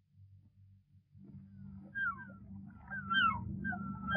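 Faint steady hum, then from about a second in a soft background bed fades up with short high calls that glide up and down, growing more frequent towards the end.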